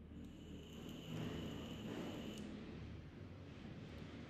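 Faint room noise and low hum from an open microphone on a video call, with a thin high-pitched whine for about two seconds that cuts off suddenly.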